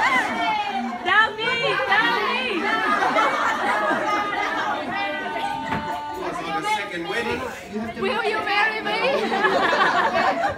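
Several voices talking over one another at once, a steady hubbub of overlapping conversation among a group of people.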